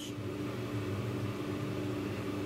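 Steady low machine hum, a few constant tones over a faint hiss, unchanging throughout.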